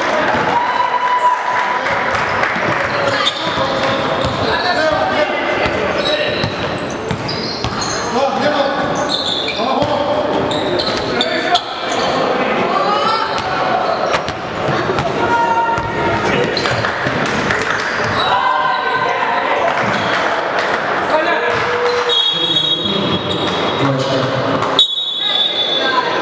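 Live basketball game in a gym: the ball bouncing on the court, with players and spectators calling out. Near the end come two short, high, steady referee's whistle blasts that stop play.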